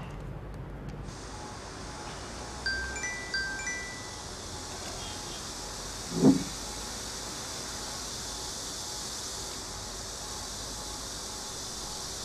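Mobile phone message alert: a short bright chime of a few quick high notes, sounding twice in quick succession, the sign of an incoming text message. About six seconds in comes a brief, louder low sound over a steady hiss.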